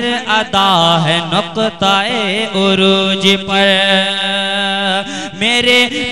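A man's voice singing a naat, an Urdu devotional poem, without words being clearly formed: the melody is drawn out and ornamented, then held on one long note in the middle before he turns the phrase again near the end.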